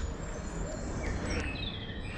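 Wild birds singing in woodland, a few short gliding chirps from about a second in, over a steady low background rumble.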